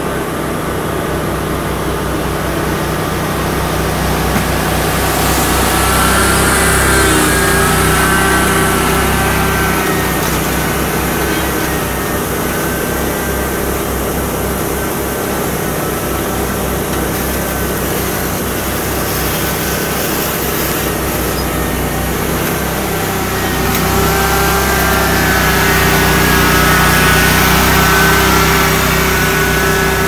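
Riding mower engine running steadily under load while pushing leaves with a front-mounted leaf plow, with a higher whine that grows louder twice, around the sixth to ninth second and again in the last few seconds.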